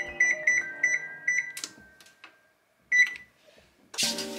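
Whirlpool electric range's oven keypad beeping as its buttons are pressed to set the oven temperature: about five short beeps in quick succession in the first second and a half, a click, then one louder beep about three seconds in.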